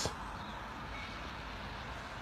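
Low, steady hiss of road traffic heard at the roadside, even throughout, with no single vehicle standing out.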